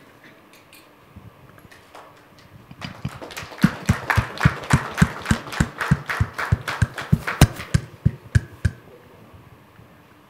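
Small group applauding for about six seconds, starting about three seconds in, with loud claps from one person clapping right at the microphone.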